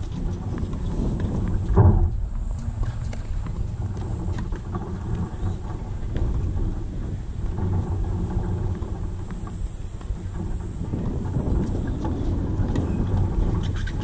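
Wind buffeting an outdoor camera microphone: a steady, uneven low rumble that swells and eases, with one loud thump about two seconds in.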